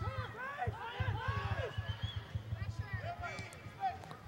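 Distant voices of soccer players and spectators, several people calling and talking over one another, with faint low thumps underneath.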